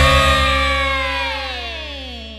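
Closing notes of a Javanese campursari (Sragenan) band: a sustained pitched chord slides slowly downward in pitch and fades away over a low bass tone.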